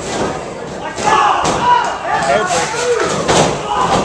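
Heavy thuds of wrestlers' bodies and feet on a wrestling ring's canvas, with spectators shouting; the loudest impact comes a little after three seconds in.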